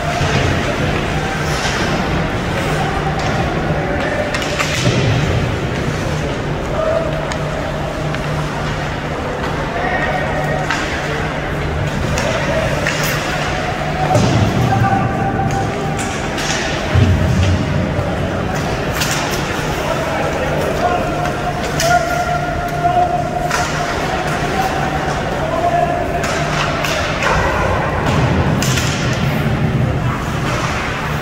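Ice hockey play: sticks and the puck knocking against the boards and glass at irregular moments, over a steady low hum and background voices in the rink.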